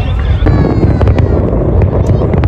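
Aerial fireworks bursting: a dense rumble of explosions with sharp bangs about a second in and again near the end.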